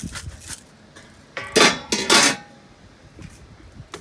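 Salt going into a pot of pasta water with a few quick strokes, then two loud metallic clanks of cookware about half a second apart.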